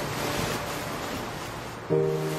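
Steady rushing noise of waves and wind. Held music notes come back in just before the end.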